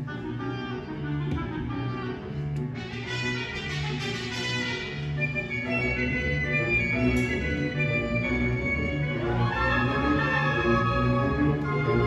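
Concert band playing: sustained woodwind and brass chords over a steadily repeated low note, with higher parts entering brighter about three seconds in and again near the end as the music grows louder.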